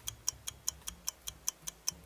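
Clock ticking sound effect: quick, even ticks, about five a second.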